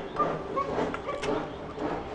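A dog making a few short, high-pitched calls.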